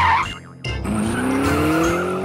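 A vehicle motor speeding up as it sets off, its pitch rising steadily from a little past half a second in.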